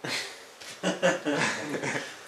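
Soft laughter: a breathy burst, then a run of chuckling from about a second in.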